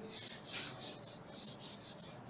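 Chalk being rubbed off a blackboard: a quick run of short, hissing wiping strokes, about four a second, as the board is cleared.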